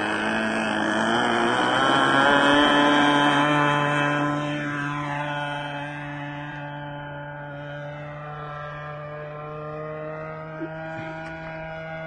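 O.S. Max .50 two-stroke glow engine of a radio-controlled Extra 300S model plane, running at high throttle through its takeoff run. After about four seconds the pitch falls and the sound grows fainter as the plane flies away, then holds steady.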